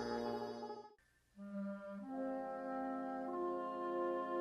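Background music led by brass. A held chord cuts off just before a second in, and after a brief gap low brass notes come in and build into sustained, suspenseful chords.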